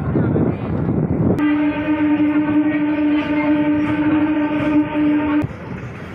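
Local passenger train's horn sounding one long steady blast of about four seconds, starting a little over a second in and cutting off sharply near the end, over the rumble of the train running on the track.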